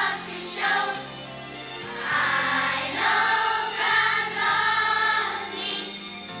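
Children's choir singing a Christian song in held, sustained phrases over instrumental accompaniment with a steady bass line.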